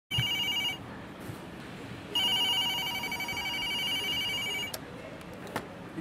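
Telephone ringing twice with a warbling electronic ring: a short ring at the start, then a longer ring of about two and a half seconds. A sharp click follows near the end as the call is picked up.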